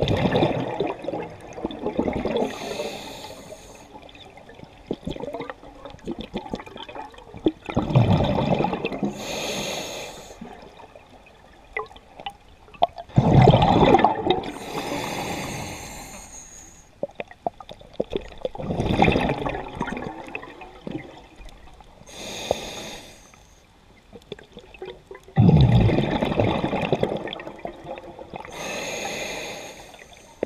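A scuba diver breathing through a regulator underwater. Each breath is a hissing inhalation followed by a louder rush of exhaled bubbles, five breaths in all, a new one every six seconds or so.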